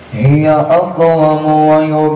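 A man's voice chanting in a slow, melodic recitation style, starting a moment in, with a quick ornamented run about half a second in and then long held notes.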